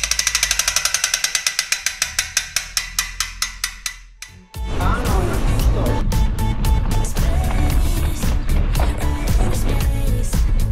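Rapid, even metallic ticking of a bicycle freewheel hub, about eight clicks a second, fading away over the first four seconds; then music with a steady beat starts about halfway through.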